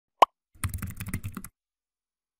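A single short pop with a downward pitch sweep, then about a second of rapid computer-keyboard typing clicks: intro sound effects as a web address is typed into a bar.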